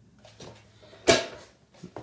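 A single sharp knock about a second in, ringing briefly, with fainter clicks before and after it.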